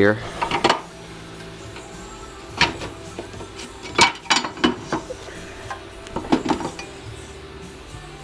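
Steel winch plate knocking and clinking against the front frame of a Honda TRX300FW ATV as it is worked by hand: several sharp metallic knocks at irregular intervals. Faint music plays underneath.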